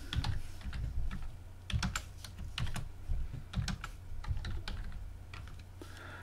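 Keystrokes on a computer keyboard typing a short terminal command: sharp key clicks in uneven clusters with short pauses between.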